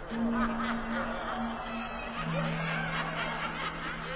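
A radio-drama sound effect: a crowd of faint, eerie voices with snickering laughter over a low held musical note that steps down about halfway through. These are ghostly voices that the listener first takes for the wind.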